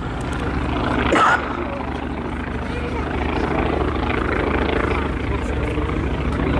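Pratt & Whitney Wasp radial engine of a Boeing P-26 Peashooter running steadily in flight, a pitched drone that grows slightly louder in the first second as the aircraft passes.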